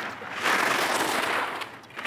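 Ski edges carving across hard-packed race snow in a giant slalom turn: one long, loud hiss that builds about half a second in, holds for about a second and fades.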